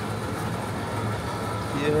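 Steady low hum of supermarket background noise, even in level throughout, with a man's voice saying a couple of words near the end.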